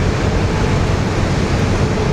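Steady rushing wind noise and low rumble aboard a moving river ferry, with a faint steady hum underneath.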